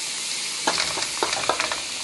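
Chicken breasts and chopped onion frying in hot oil in a nonstick pan: a steady sizzle, with a quick run of sharp clicks and crackles from about half a second in, lasting about a second.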